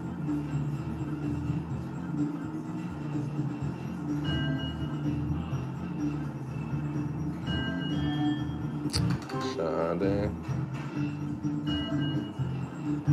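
Novoline Book of Ra slot machine playing its electronic free-spin music: a repeating melody of short beeping notes as the reels spin and stop.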